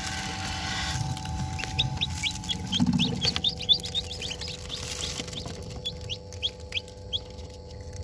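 Newly hatched chicks peeping in an incubator: a quick run of short, high peeps through the middle, thinning to scattered peeps near the end, over a steady hum. A low bump of handling noise comes about three seconds in.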